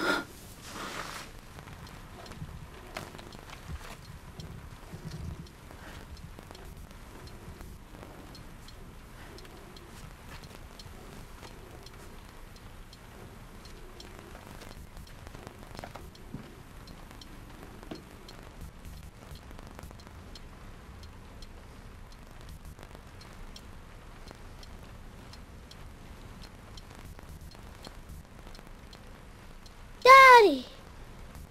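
Quiet room tone with a low steady hiss, broken by faint scattered clicks and light rustles. It opens with a brief, louder falling tone.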